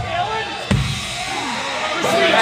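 A single kick drum hit about two-thirds of a second in, over crowd chatter in a club.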